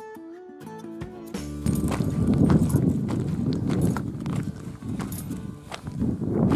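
Background music for about the first second and a half, then loud wind buffeting the microphone, with scattered crunching steps on gravel.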